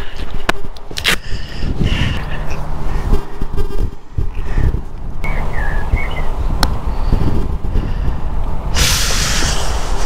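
A single sharp click of a putter striking a golf ball on the green, about six and a half seconds in, over a steady low rumble that runs throughout; a brief burst of hiss comes near the end.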